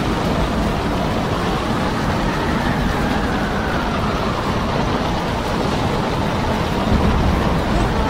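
Storm wind and rough sea heard aboard a ship: a loud, steady rushing noise with a heavy, uneven low rumble and a faint wavering whistle.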